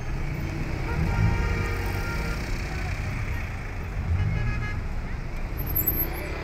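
Traffic on a congested city road: a steady low rumble of engines from cars and vans in slow traffic, with voices of people standing among them.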